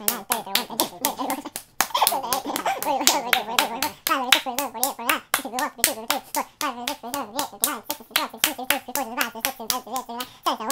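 Rapid high fives: bare palms slapping together, about four slaps a second at an even pace.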